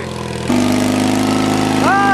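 Simplicity garden tractor engine running under throttle while the tractor is stuck in mud. About half a second in the engine is given more throttle and runs louder at higher revs.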